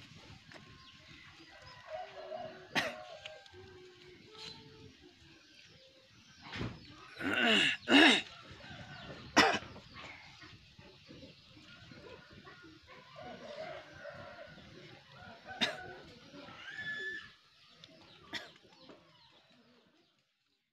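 A rooster crowing loudly once about seven to eight seconds in, with quieter fowl calls and a few sharp snaps around it.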